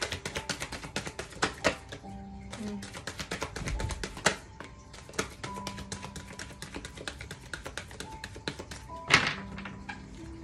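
Deck of oracle cards being shuffled by hand: rapid runs of small clicks as the cards slap together, in two stretches, with a louder knock near the end. Soft background music plays underneath.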